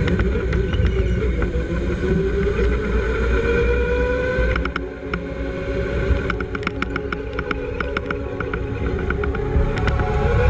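A vehicle's motor running, its pitch climbing for a few seconds, with a run of sharp clicks in the second half.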